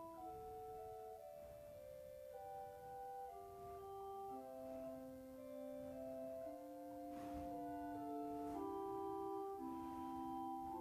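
Wicks pipe organ playing a fugue on soft stops: several voices in held notes moving against each other in interweaving lines.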